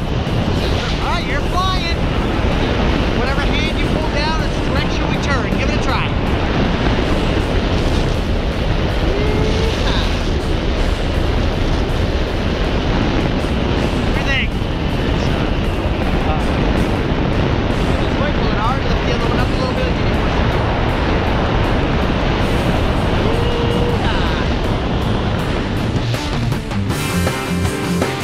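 Loud, steady wind buffeting the microphone of a wrist-mounted action camera during a tandem parachute descent under canopy, with brief snatches of voices lost in the wind.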